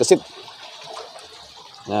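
Faint, steady trickle of running water pouring into a koi pond.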